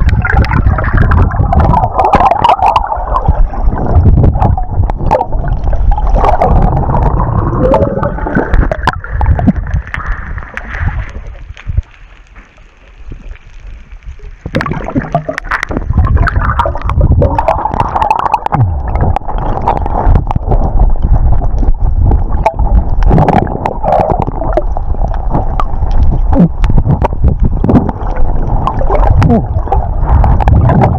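Muffled churning and gurgling of seawater around a camera held underwater by a swimmer, with a heavy low rumble and splashy crackle from the strokes. It drops away for a few seconds a little before the middle, then picks up again.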